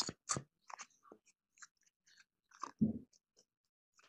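Scattered small clicks and crackles, with one duller, louder thump about three quarters of the way in.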